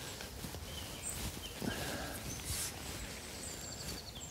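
Quiet countryside ambience: a few faint, short bird calls over low, steady background noise.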